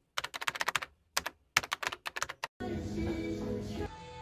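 Computer-keyboard typing sound effect: quick key clicks in three short runs with brief pauses between them. About two and a half seconds in, background music with held tones comes in.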